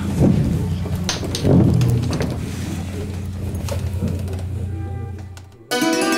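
A steady low hum with a few knocks fades away. About five and a half seconds in, a hammered dulcimer (Hutsul tsymbaly) suddenly starts: quick struck notes on metal strings.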